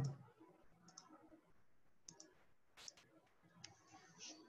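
A few faint computer mouse clicks, spaced out, the loudest about three seconds in.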